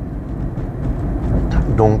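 Steady low road and tyre rumble inside the cabin of a moving Dacia Spring electric car, with no engine note, and a man's voice briefly near the end.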